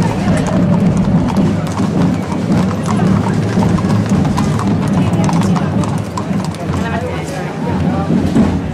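Several horses' hooves clip-clopping on stone paving as they walk past in procession, over the steady chatter of a large crowd.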